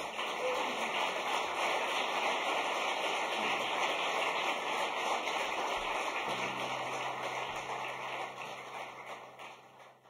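Audience applauding, a dense steady clapping that fades out near the end.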